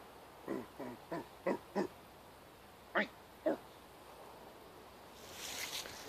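A man's voice making short, animal-like intimidating sounds, seven in quick succession over the first few seconds, the last two the loudest, meant to scare off a bear or other wild animal. A soft rustling hiss follows near the end.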